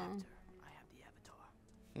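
Quiet speech only: a short spoken "oh" at the start, faint dialogue from the cartoon episode being watched in the middle, and a murmured "hmm" just before the end.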